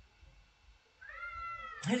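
A single short, high-pitched call about a second in, under a second long, that rises slightly in pitch and then holds, like a cat's meow.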